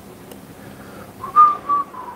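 Whistling: a few short, clear notes starting just over a second in, stepping down in pitch.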